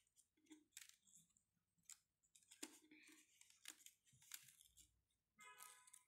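Near silence, with faint scattered rustles and taps of white chart paper being handled and folded by hand. A brief faint tone sounds near the end.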